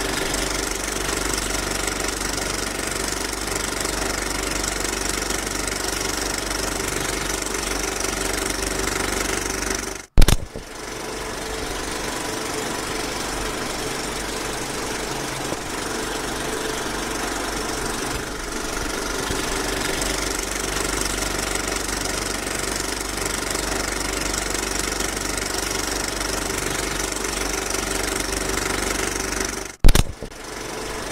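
A film projector running with a steady mechanical clatter and hum. About ten seconds in and again at the end it cuts out briefly, with a sharp click as it comes back.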